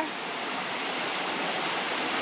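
Waterfall pouring with a steady, even rush of falling water.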